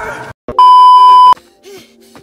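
Music with singing cuts off abruptly, and after a brief gap a loud, steady electronic bleep tone sounds for under a second, the kind of edit bleep used to censor a word. Faint voices follow it.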